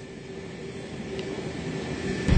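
Steady electrical hum and room noise through the venue's sound system, with a low rumble of handheld-microphone handling that grows louder toward the end.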